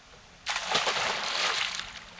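A hooked longnose gar thrashing at the surface beside the boat: a loud burst of splashing that starts about half a second in and lasts just over a second.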